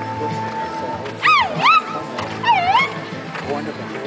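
Two loud, high-pitched whooping yells, each swooping down and back up, about a second apart, over background music.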